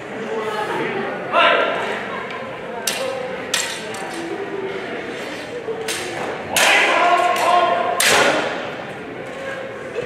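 Steel longsword blades clashing during sparring: two sharp strikes about three seconds in, then two louder ones with a brief ring at about six and a half and eight seconds.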